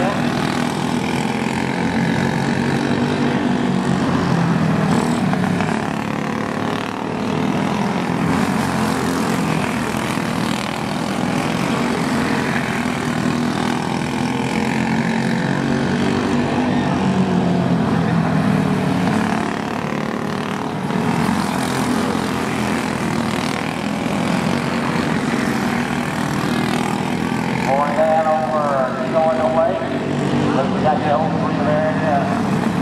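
Racing go-karts running laps on a dirt oval: a steady engine drone that swells and fades as the karts go round. Near the end, one kart's engine passes closer, its pitch rising and falling.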